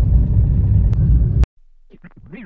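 Steady low rumble of a car's engine and tyres heard inside the cabin while driving a rough village road, cutting off abruptly about one and a half seconds in. Sliding musical tones start just before the end.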